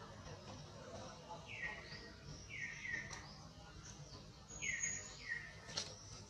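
Short, high call notes, each falling in pitch, repeated about five times at uneven spacing, some in close pairs, over a faint steady hiss.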